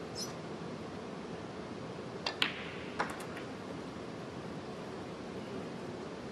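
Snooker shot: the cue tip striking the cue ball, then balls clicking together, heard as a few sharp clicks a little over two seconds in and a second smaller group about a second later as the pink is potted. A steady low hush of the quiet arena runs under it.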